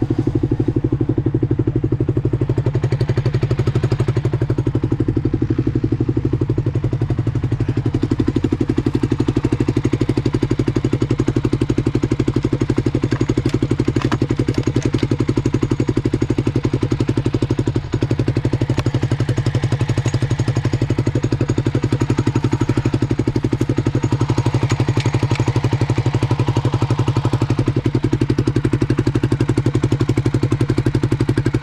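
Kawasaki KLR250 single-cylinder four-stroke engine idling steadily, its even firing holding at one speed.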